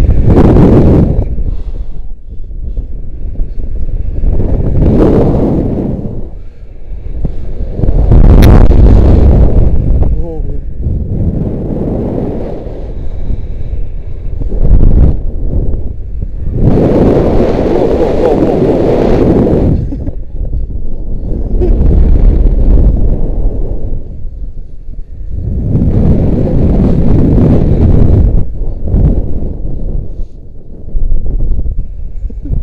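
Wind buffeting an action camera's microphone as a rope jumper swings on the rope under a bridge, the rush swelling and fading in surges every few seconds with each pass of the swing.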